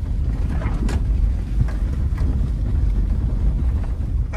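Steady low rumble of a 1995 Subaru Legacy driving slowly over a rough dirt fire road, heard inside the cabin, with a few light knocks from the bumpy surface.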